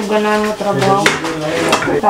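Metal spoon scraping and knocking against a stainless-steel frying pan as the cooked filling is emptied into a pot, with a sharp clink about a second in. People's voices can be heard under it.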